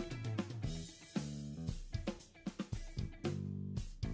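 Instrumental background music with a steady drum beat, bass and guitar.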